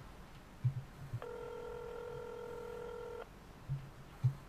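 Mobile phone ringback tone heard from the handset while an outgoing call rings: one steady low beep lasting about two seconds, starting about a second in. A few soft knocks from the phone being handled come before and after it.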